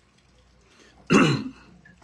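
A man clearing his throat once, about a second in, in a short voiced burst that drops in pitch.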